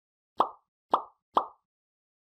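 Three short pop sound effects about half a second apart, from the animated like, comment and share end card.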